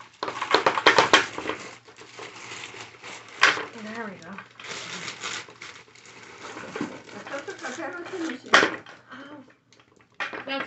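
Knocks and clatter of hard plastic office-chair parts being handled as casters are pushed into the chair's base: a quick run of knocks in the first second, and single sharper knocks about three and a half and eight and a half seconds in. Low murmured voices come in between.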